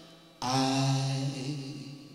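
A singing voice holding one long, steady note that starts about half a second in and fades away near the end.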